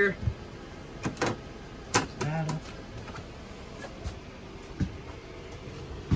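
A few sharp plastic clicks and knocks from the fold-down plastic cover of an RV power converter and breaker panel being handled and shut.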